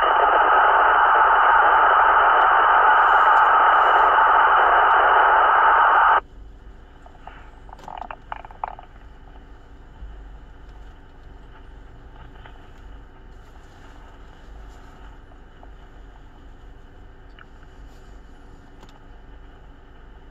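Police portable radio speaker hissing with loud static for about six seconds, which cuts off suddenly. After that only a faint steady hiss remains, with a few brief faint sounds about eight seconds in.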